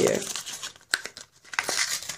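Shopkins Fashion Spree blind-pack wrapper being torn open by hand and crinkled, in a run of short rips and crackles with a brief quieter gap a little past halfway.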